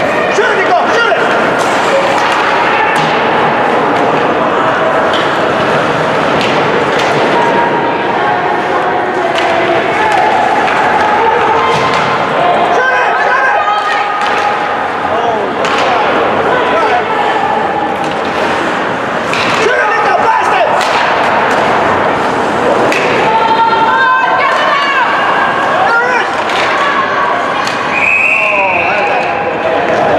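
Ice hockey rink sound: voices of spectators and players talking and calling out, with repeated thuds and slams of the puck, sticks and bodies against the boards. A referee's whistle blows for a stoppage near the end.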